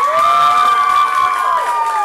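A few people cheering with a long, high "woo" that rises and is held for nearly two seconds before falling away, with hand clapping.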